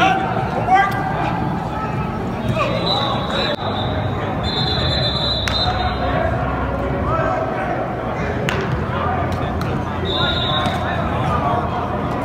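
Football practice in a large indoor hall: voices calling out over scattered thuds and clicks. A high steady tone sounds three times, each about a second long, about three, five and ten seconds in.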